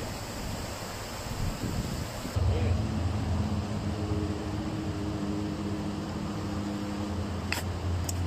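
A steady rushing hiss of a river flowing below a bridge, then after a sudden change a steady low machine hum, with a single click near the end.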